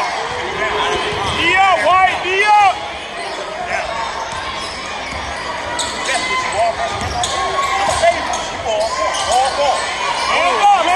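Basketball game on a hardwood gym floor: the ball bouncing in sharp knocks, with sneakers squeaking and voices shouting in short bursts.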